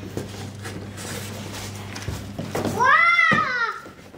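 Cardboard box and its packing rustling and scraping as a toddler rummages inside it, then a young child's brief high-pitched call, rising and falling, about two and a half seconds in.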